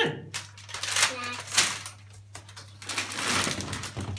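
Plastic-wrapped snack packages rustling and being handled and set down, in irregular bursts with a sharp knock about a second and a half in.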